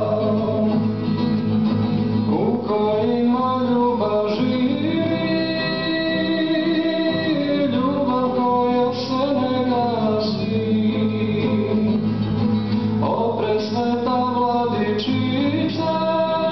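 A man singing a Serbian Orthodox spiritual song in Serbian with long held notes, accompanying himself on a nylon-string classical guitar.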